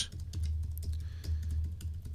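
Typing on a computer keyboard: a quick, irregular run of light key clicks, over a steady low hum.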